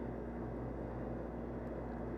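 Walk-in cooler's evaporator fan running with a steady hum and even airflow noise.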